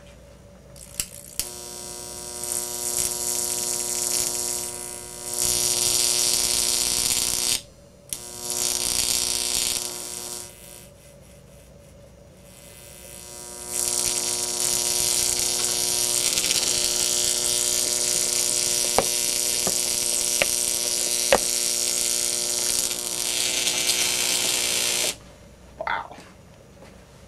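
High-voltage arc from a 12,000-volt neon sign transformer buzzing with a mains hum and hiss. It strikes and drops out a few times, and there are several sharp snaps partway through.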